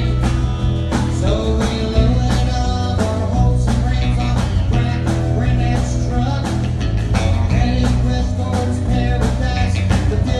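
Live country band playing a song with a steady beat: acoustic guitar, electric guitar, bass and drums.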